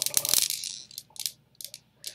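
Steel balls of a Newton's cradle clacking against each other after two are swung: a fast run of clicks in the first half second, then a few scattered clicks that die away.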